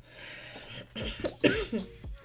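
A woman coughing and clearing her throat in a couple of short bursts about a second in.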